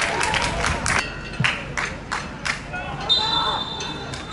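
Voices calling out on a football pitch with several sharp knocks in the middle, then a referee's whistle blowing from about three seconds in: the final whistle.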